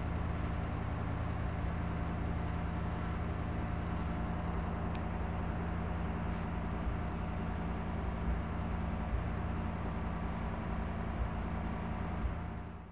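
A steady mechanical hum as the 1957 Ford Fairlane 500 Skyliner runs and its retractable hardtop mechanism folds the roof back into the trunk.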